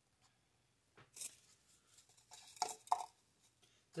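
Faint handling sounds of a small wooden crate and a block of dry floral foam being set down and moved against each other on a towel: a brief scrape about a second in and two soft knocks near the end.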